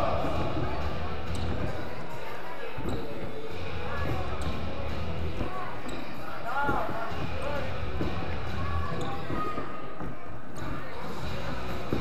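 Repeated dull thuds of several athletes landing box jumps on wooden plyo boxes and jumping back down, going on throughout, with voices calling in a large echoing hall.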